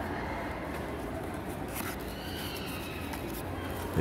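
Steady low background noise while a cardboard trading-card box is handled, with one light knock a little before two seconds in.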